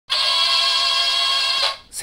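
Intro sting: one sustained electronic musical tone held steady for about a second and a half, then fading out.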